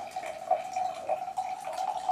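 A steady faint hum in a small room, with light scattered handling noises and a small tick about half a second in.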